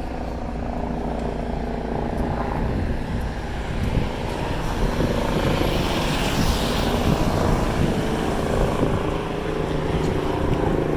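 Police helicopter flying overhead: a steady drone of rotor and turbine engine, growing a little louder and fuller about six seconds in.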